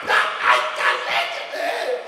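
A man imitating a dog barking into a stage microphone: several short, loud barks in quick succession, about half a second apart.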